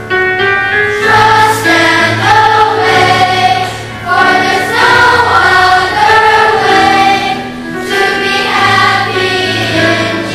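Large children's choir singing, in phrases with short breaks about four and about seven and a half seconds in.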